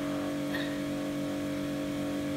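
A steady mechanical hum, several fixed tones held at one level without change.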